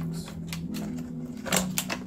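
Hard plastic packaging insert clicking and rattling as it is pushed back into its box, with a cluster of sharp clicks about one and a half seconds in.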